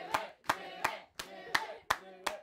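Hands clapping in a steady rhythm, about three claps a second, with faint voices between the claps.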